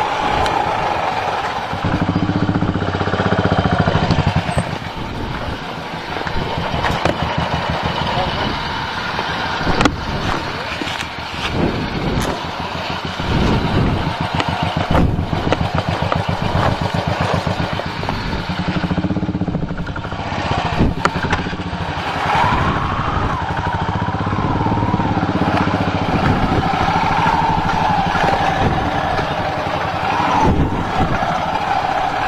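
Motorcycle engine running at low speed over a rough, stony dirt road, with knocks and rattles from the bike over the bumps.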